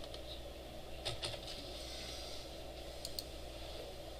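A few faint keystrokes on a computer keyboard, about a second in and again just past three seconds, over a steady low room hum.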